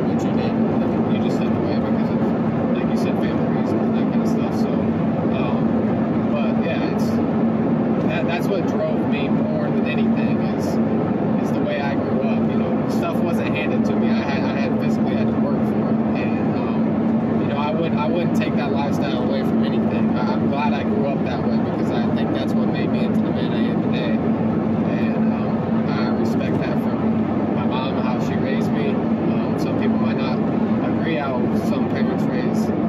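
Steady engine and road drone heard from inside the cabin of a moving car, with a man talking over it.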